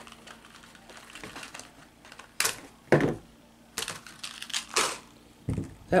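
Crinkling of a plastic blister pack of aluminium craft wire and a few sharp clicks from about halfway through, as a short length of wire is pulled out and snipped off with wire cutters.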